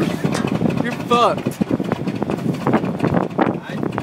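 Voices in the cab of a 1951 International truck, over the low rumble and rattling of the vehicle, with short knocks throughout.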